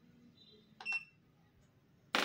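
Short, sharp metallic click with a brief ringing tone about a second in, from handling the D-type impact probe of a Leeb hardness tester as it is loaded; otherwise quiet.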